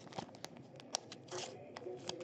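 Faint handling of trading cards: a few light clicks and short rustles as cards are slid and flipped off a stack.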